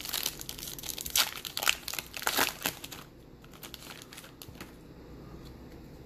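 A foil trading-card pack wrapper being torn open and crinkled by hand, a dense crackling for about the first three seconds, then only faint handling sounds.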